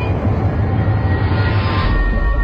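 A loud, steady rumbling roar from a produced transition sound effect. It grows brighter toward the end and cuts off suddenly just before two seconds.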